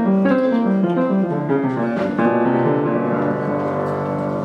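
Upright piano played by hand, a run of melody notes over chords; a chord struck about two seconds in is held and rings on, slowly fading.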